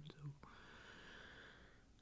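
Near silence: the last bit of a spoken word, then a faint breathy hiss for about a second before it goes silent.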